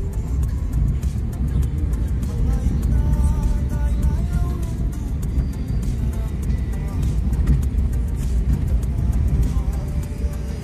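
Steady low rumble of a car's engine and tyres heard from inside the cabin while driving, with music playing over it.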